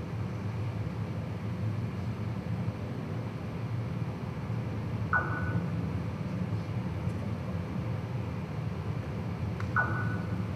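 Steady low hum of lecture-hall room noise, with a short high tone about five seconds in and again near the end.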